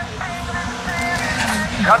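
A race car's engine runs steadily at the start line, and its pitch dips near the end.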